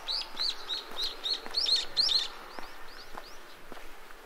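A small bird singing a rapid series of repeated high, arched notes, about three or four a second. The song fades off a little over two seconds in, with a walker's footsteps faintly underneath.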